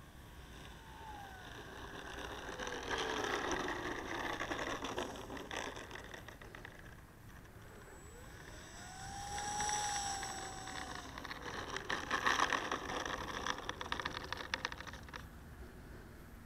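Electric motor of an E-flite P-47 Thunderbolt RC model plane whining at low throttle as it rolls out and taxis. Its pitch falls early on, rises again about halfway through, then drops off. Over the last few seconds a crackling rattle is heard as the landing gear rolls over the pavement.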